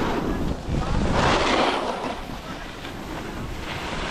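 Wind buffeting the microphone as a snowboard slides down packed snow, its edge scraping the surface, loudest about a second in.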